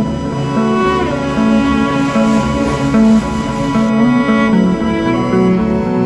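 Instrumental background music: a slow melody of held notes over a steady accompaniment.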